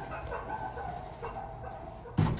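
Sliding stainless-steel doors of a Schindler hydraulic elevator closing, with a wavering, broken high-pitched squeak over a low hum.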